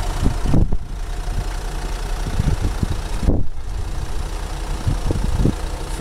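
Steady idling engine drone with rumbling low noise. The higher hiss drops away briefly twice, once under a second in and again about three seconds in.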